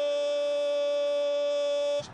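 A TV football commentator's long, drawn-out goal call, 'Gooool', held as a single loud vowel at steady pitch and cut off abruptly at the end.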